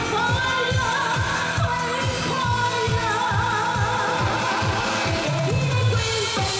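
Mandarin pop song performed live: a female singer's long held, wavering notes over band backing with a steady drum beat.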